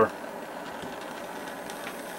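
Handheld butane torch burning with a steady hiss, its flame heating a socket cherry-hot to anneal a brass cartridge case.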